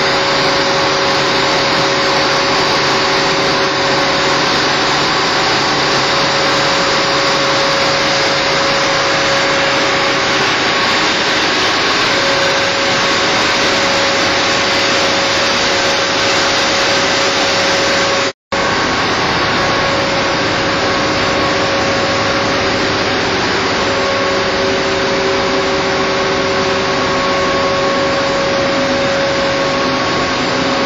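Ship's engine-room machinery running: a loud, steady wash of noise with several steady tones held over it. The sound cuts out for an instant about two-thirds of the way through.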